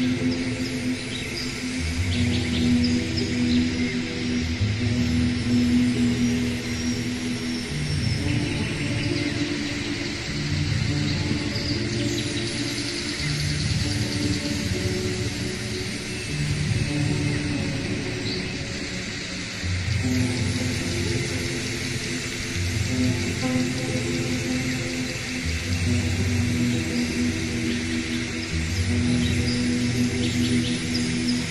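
Slow ambient background music: long sustained low chords that change every few seconds, with a faint high shimmer above.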